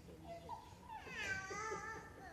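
Faint high-pitched cry: a few short sounds, then about a second in a long drawn-out call that falls in pitch.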